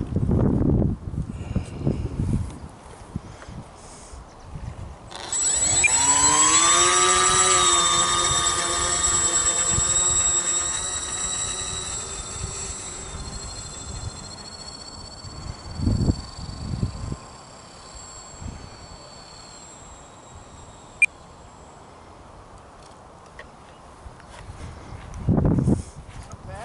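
Electric motor and propeller of a radio-controlled autogyro whining as the throttle is opened about five seconds in. The pitch rises quickly and then holds, and the whine fades gradually as the model taxis away and lifts off in a short hop. A low rumble comes before it, and there is a thump and a single sharp click later on.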